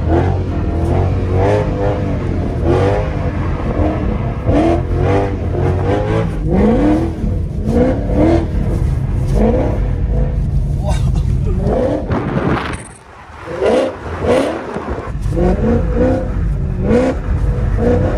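The naturally aspirated V8 of a Mercedes C63 AMG Black Series, heard from inside the cabin, revving up in quick repeated surges as the rear wheels spin and the car slides sideways on ice. The revs drop off briefly about thirteen seconds in, then pick up again.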